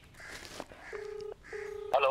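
Telephone ringback tone coming over a mobile phone's loudspeaker: a low steady double beep, two short pulses close together about a second in, the repeating 'ring-ring' of a call that has not yet been answered.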